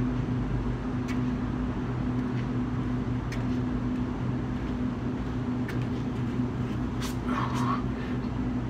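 Steady low mechanical hum from nearby equipment, with a few faint ticks. A short scuffing sound comes near the end as a man drops down onto the concrete into a pushup position.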